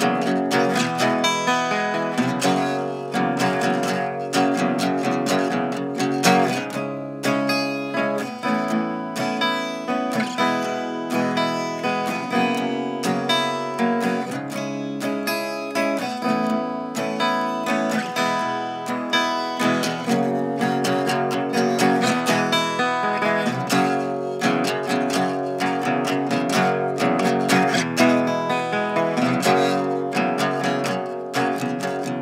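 Sunburst archtop acoustic guitar played unplugged: steadily strummed chords in an instrumental passage of a country-folk song, with no singing.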